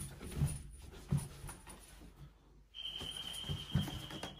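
A man makes short, low panting or huffing noises close to a door, a few at a time. Near the end a steady high-pitched electronic tone sounds for about a second and a half.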